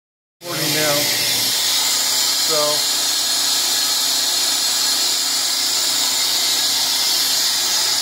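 Steady high-pitched hiss of running machinery, with no change in level or pitch.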